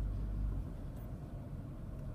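Low road and tyre rumble inside a Toyota Prius cabin as the car slows under regenerative braking, easing off about half a second in.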